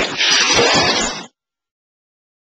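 A loud hissing, static-like noise burst, like a logo sound effect, that cuts off abruptly a little over a second in.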